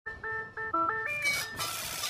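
A short electronic-sounding jingle: a quick run of about eight bright notes stepping up and down, which gives way to a steady hiss about a second and a half in.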